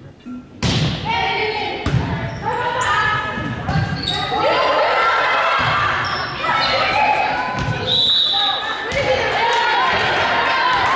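Volleyball rally in a gym: sharp ball hits and many girls' voices calling and shouting, echoing in the hall, ending in cheering as the players gather after the point.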